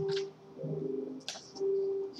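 Soft, slow keyboard music in a church sanctuary: low sustained notes held about half a second each, with a couple of brief sharp clicks.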